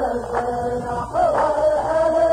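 Men chanting a muhawara poetry verse together in unison, one held melodic line that slides to a new note twice. A steady low hum runs underneath.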